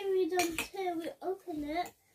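A young child's high, sing-song voice holding drawn-out syllables without clear words, with a few sharp clinks of metal cutlery against a ceramic bowl about half a second in.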